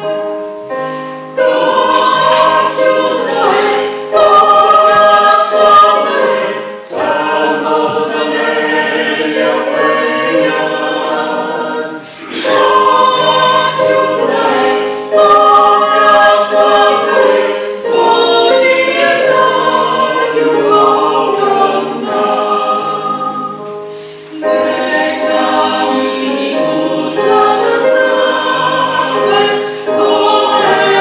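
Small mixed choir of men's and women's voices singing a hymn in parts, accompanied by a keyboard, in long phrases with brief breaks between them.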